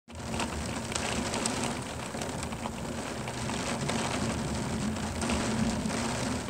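Steady rain falling during a thunderstorm, a dense patter of drops hitting surfaces close by.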